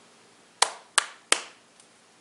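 Three hand claps in quick succession, evenly spaced about a third of a second apart.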